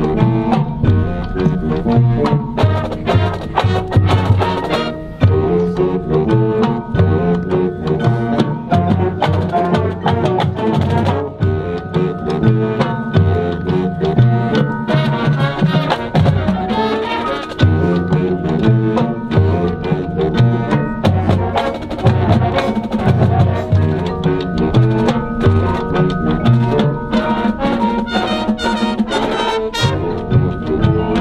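Marching band playing: brass winds and drumline with a steady driving beat, over front-ensemble mallet percussion.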